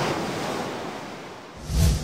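Crashing ocean surf washing and slowly fading, then a short loud rush with a low thump near the end.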